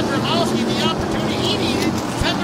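A pack of SST modified race cars running together at speed down the straightaway, their engines blending into one steady drone.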